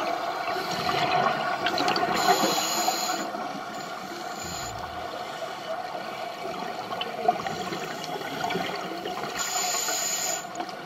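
Underwater sound of a scuba diver breathing through a regulator: a rush of exhaled bubbles about two seconds in and another near the end, over a steady underwater hum.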